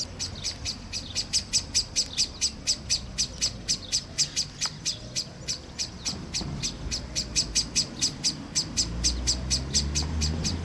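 Common blackbird giving its rapid, repeated 'chink' alarm call, about five sharp notes a second without a break. The uploader takes it to be an alarm at her presence.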